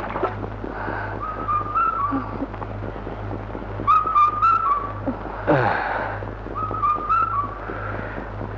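A high, wavering whistled tune in three short phrases, each ending in a little trill, over a steady low electrical hum from the old film soundtrack.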